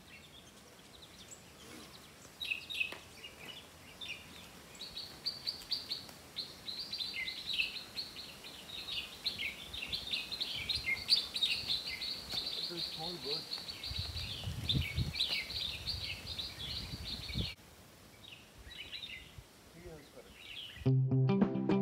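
A flock of birds chirping and chattering together in the trees, a dense run of short high calls that cuts off suddenly near the end. A low rumble joins in for the last few seconds of the chorus.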